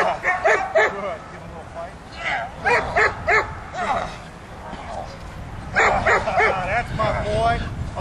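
A young German Shepherd making short vocal sounds while it grips a bitesuit sleeve, mixed with a man's voice, in three bursts: near the start, in the middle and about three-quarters of the way through.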